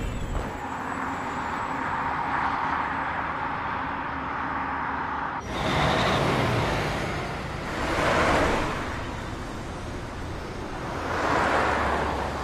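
A steady rushing noise for about five seconds, then, after a sudden change, road traffic with vehicles passing one after another, a city bus and a car among them: three passes, each swelling and fading.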